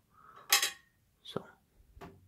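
A short clatter of small hard plastic parts knocking together about half a second in, as a USB card reader is handled, followed by a brief click a little past a second in.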